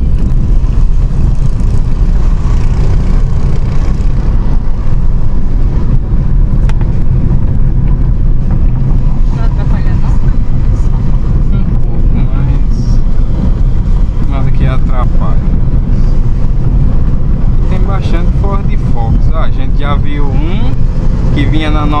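Steady low rumble of a Ford Focus 2.0 on the move, heard from inside the cabin: road and engine noise. A man's voice speaks over it in the last several seconds.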